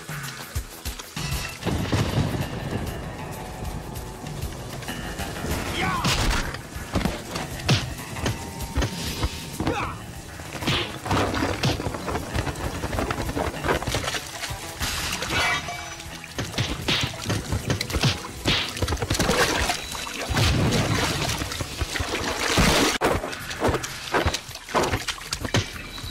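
Action-film fight soundtrack: music with repeated punches, crashes and splashing water.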